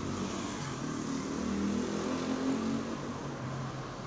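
Street traffic ambience: a steady hum of car traffic.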